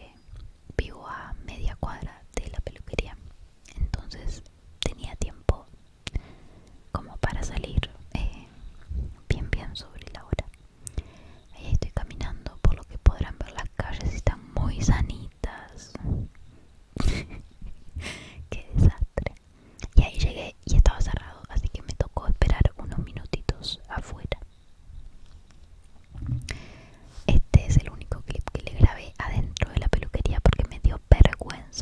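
A woman whispering close to the microphone in ASMR style, in phrases with short pauses, one longer lull near the end.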